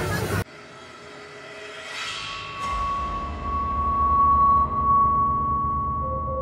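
Haunted-house ambient soundtrack: a low rumbling drone swells up from quiet, with a whooshing sweep about two seconds in, followed by a steady, high held tone.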